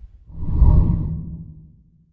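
Whoosh sound effect of a TV channel's logo sting: a swell with a low rumble that rises about a third of a second in and fades away within about a second and a half.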